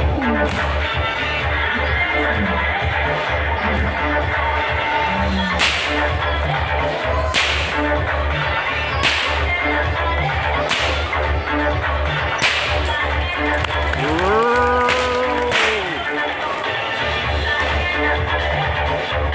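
A whip cracking sharply in a steady series, about once every second and a half to two seconds from about five seconds in, over background music with a steady beat.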